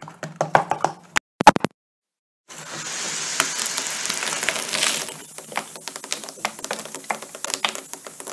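Vinegar and bicarb reacting in a plastic bottle stoppered with plasticine. After clicks as the stopper is pressed on, the gas pressure drives a jet of liquid out through the hole in the plasticine with a steady spraying hiss from about two and a half seconds in, lasting about two and a half seconds, then fizzing with many small crackles.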